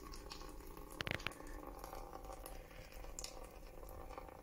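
Lever briquette press squeezing a wet sawdust and coffee-grounds mix, pressing the water out. It is faint, with a short crackling squelch about a second in.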